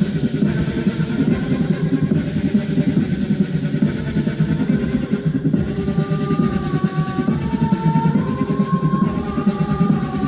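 A large pop choir performing live, massed voices over a steady drum-like beat; a higher stepped melody line comes in about six seconds in.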